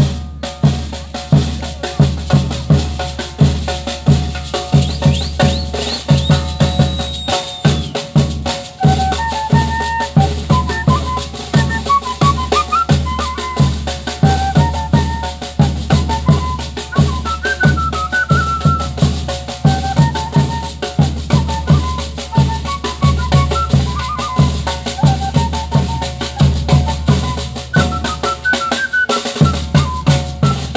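A Bolivian tamborita band playing. A large bass drum and a snare drum keep a steady, even beat, with a gourd rattle, and a flute melody comes in over the drums about eight seconds in.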